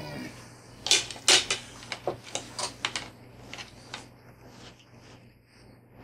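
Metal forks clinking and tapping against a plate and open sardine tins: a run of sharp clicks over the first few seconds, the two loudest a little after a second in, then dying away.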